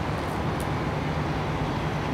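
Steady low rumble of city traffic noise.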